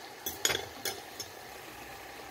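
A few light clinks and knocks against a small cooking pot holding steamed artichokes, the loudest about half a second in, over a faint steady hiss.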